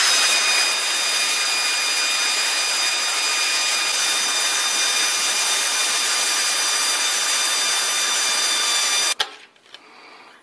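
A power tool running continuously with a steady high whine, loosening the connecting rod cap bolts of an engine; it starts abruptly and cuts off suddenly about nine seconds in.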